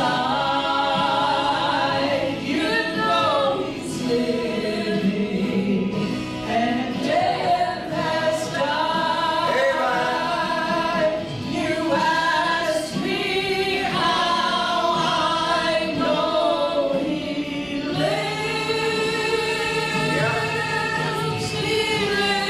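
Two women singing a gospel song together into microphones, their voices amplified through the church sound system.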